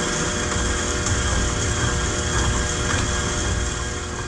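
KitchenAid Professional 6000 HD stand mixer running steadily, its motor and gears humming with a few steady tones as the dough hook mixes flour into the wet ingredients for a yeast dough.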